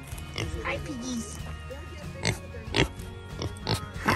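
Background music with steady held notes, over which pigs grunt several times in short, sharp sounds in the second half; a gliding voice-like sound comes in the first second.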